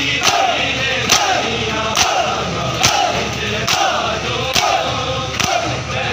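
A crowd of men beating their chests in unison (matam): a sharp collective slap a little more often than once a second, steady in rhythm, with the men chanting between the strikes.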